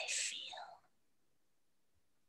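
A whispered word in the first second, then near silence.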